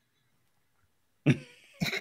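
A man coughs once, about a second in, after a moment of silence.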